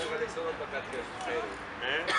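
Indistinct men's voices calling out and talking among the players, with no clear words.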